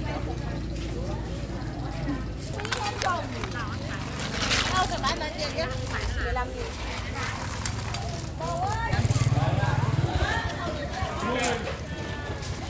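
Women chatting in a language the recogniser did not transcribe, over a steady low engine hum that grows louder for about a second around three-quarters of the way through.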